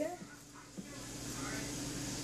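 Quiet kitchen room tone with a faint steady hum, after the tail of a spoken word at the very start; no distinct handling sound stands out.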